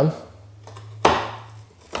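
A single sharp click about a second in as a scored ceramic tile snaps along its score line under the breaking foot of a manual rail tile cutter, the "clicking sound" that shows the break is made.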